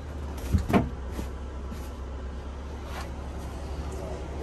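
Padded dinette seat cushions being laid down over the table, giving two soft thumps close together about half a second in and a faint click later, over a steady low hum.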